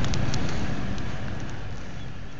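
Pickup truck creeping across a gravel shoulder close by: a low, steady rumble of engine and tyres that slowly fades, mixed with wind noise on the microphone.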